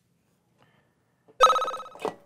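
Quiz-show answer button going off about a second and a half in: a bright electronic ring with several pitches at once that starts suddenly and fades out, signalling that a contestant has buzzed in.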